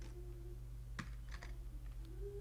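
Computer keyboard keys pressed a few times in a scattered way, the sharpest keystroke about a second in, over a faint steady hum.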